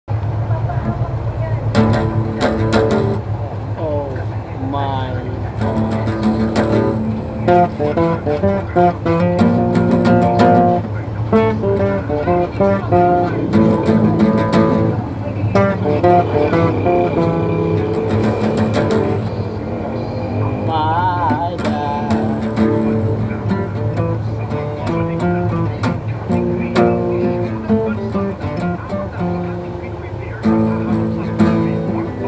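Acoustic guitar played by hand, one chord and picked note pattern after another, over a steady low hum.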